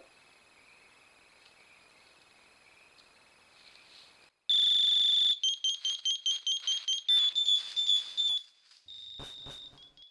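Crickets chirping steadily. About four and a half seconds in, a motion-triggered Gadfly predator-deterrent sounds a loud, shrill electronic alarm: a long beep, a fast run of repeated beeps, a string of changing tones, and another long beep.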